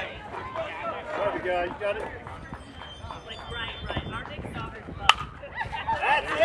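A bat striking a pitched ball: one sharp crack about five seconds in, with spectators' voices and calls around it.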